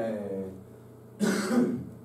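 A man's drawn-out, falling "and…", then a short cough to clear his throat about a second in.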